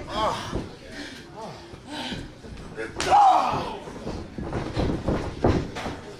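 A sharp open-hand chop landing on a bare chest about three seconds in, answered at once by a loud crowd shout. Scattered shouting voices fill the rest.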